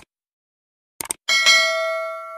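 Subscribe-button sound effect: a mouse click, another quick click about a second later, then a bright bell ding that rings on and fades over about a second and a half, the notification-bell chime.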